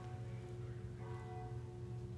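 Church bell tolling faintly: a stroke near the start and another about a second in, each left ringing, over a steady low hum.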